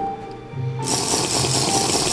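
Background music with a steady beat; about a second in, a loud hissing slurp starts suddenly as water is sucked through a small hole in a rubber balloon stretched over a plastic cup, lasting about a second and a half.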